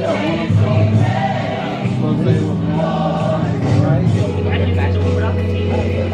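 Music with a choir singing, with a long low note held through the last couple of seconds.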